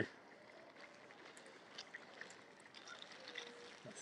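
Faint pond-edge ambience: mute swans and mallards feeding in the water close by, with soft splashing and dabbling and a few faint scattered ticks.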